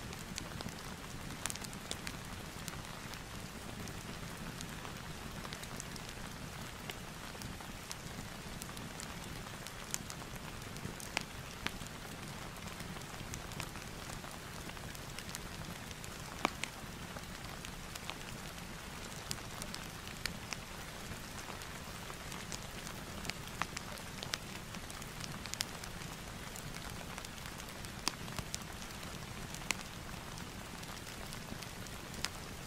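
Steady rain falling and a fireplace crackling, an even hiss with scattered sharp pops.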